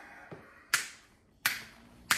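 Two sharp snapping clicks about two-thirds of a second apart, after a brief rustle at the start.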